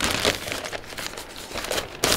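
Clear plastic packaging bag crinkling unevenly as it is handled to take a part out of the box.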